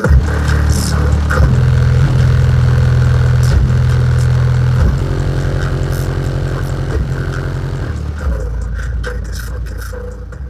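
Two American Bass subwoofers playing a bass-heavy song at high power, driven at about 600 watts by a Cerwin Vega HED 1500.1D monoblock amplifier. Deep held bass notes change every second or two, and the sound fades down over the last couple of seconds.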